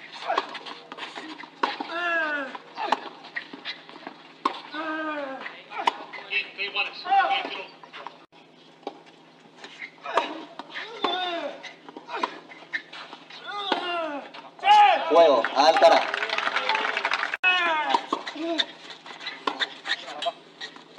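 A voice talking over a clay-court tennis match, with sharp tennis-ball strikes from the rallies.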